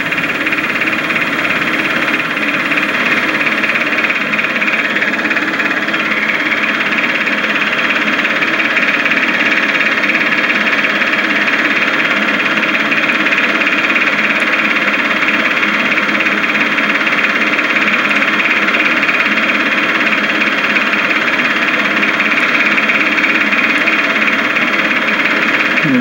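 Steady mechanical whir with a hiss, level and without change.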